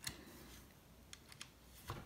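Faint clicks and ticks of a small Allen key working bolts into a 3D-printed plastic mount: a click at the start, a few light ticks a little after a second in, and a sharper click near the end.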